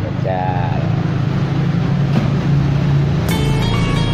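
A motor vehicle's engine idling steadily, a low hum, with a brief voice near the start. About three seconds in, a sustained steady tone with several overtones comes in.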